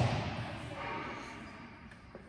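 A single thud of a volleyball at the start, ringing out in the echo of a large gym hall, then faint distant voices.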